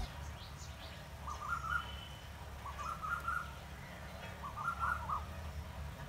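A bird calling outdoors: a short phrase of several quick notes, given three times about a second and a half apart, over a faint steady low hum.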